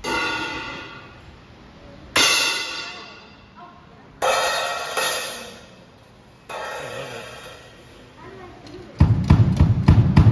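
A child playing a drum kit: five single cymbal crashes a second or two apart, each ringing out and fading, then near the end a fast run of drum hits.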